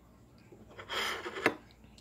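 Mostly quiet, with a brief soft rustle about a second in that ends in a sharp click: small handling noise at a kitchen counter.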